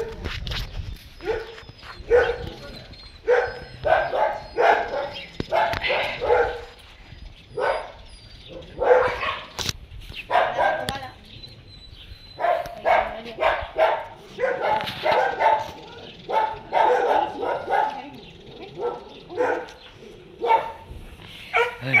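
A dog barking again and again, short barks coming in runs with brief pauses between them.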